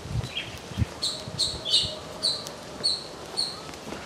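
A bird calling outdoors: about six short, high chirps repeated roughly twice a second, starting about a second in. Two brief low thumps come just before them.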